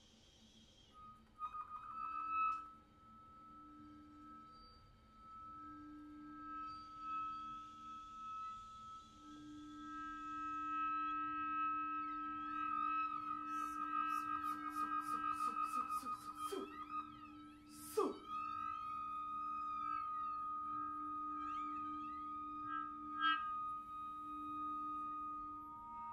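Contemporary chamber-ensemble music: a flute holds a long high note that builds in loudness and breaks into a rapid flutter, over a low held note from another instrument. Near the middle come a few sharp struck accents and sweeping glides in pitch.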